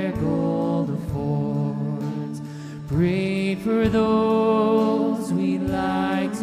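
Live worship band playing a slow song on electric guitars and drum kit, with a woman's lead vocal; the band eases back briefly, then comes in fuller about three seconds in.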